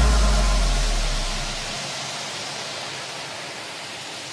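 Electronic music dropping into a noise wash: a deep bass note dies away over the first couple of seconds, leaving a fading hiss with no beat or melody.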